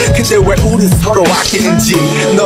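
K-pop song recording: a rapped Korean verse over a hip hop beat and bass.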